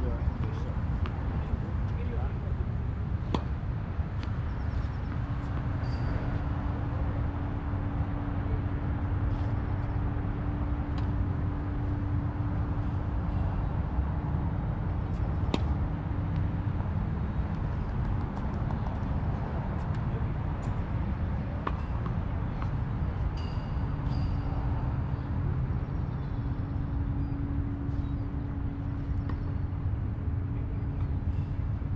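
Tennis balls struck by racquets on a hard court, heard as scattered sharp pops over a continuous low rumble. A steady low hum comes in about five seconds in, drops out past the middle, and returns near the end.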